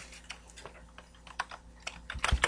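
Typing on a computer keyboard: a handful of soft, irregularly spaced keystrokes.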